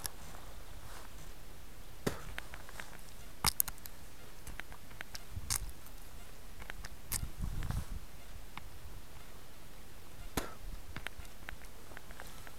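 Faint steady background noise broken by a handful of short, sharp clicks and knocks, spaced irregularly a second or more apart.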